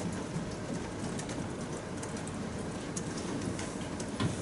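Faint, muffled speech from a distant talker over a steady room hiss.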